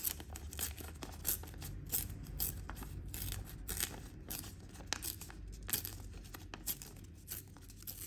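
Plain white paper being torn by hand in many short, irregular rips, with light crinkling as the fingers work the sheet, as its machine-cut edges are torn away.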